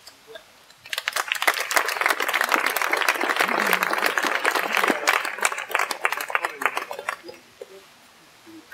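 A crowd of guests applauding: many hands clapping for about six seconds, starting about a second in and dying away near the end.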